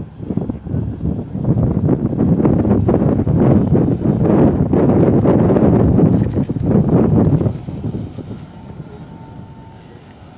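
Wind buffeting the camera microphone, a loud, uneven low rumble that eases off about three-quarters of the way through.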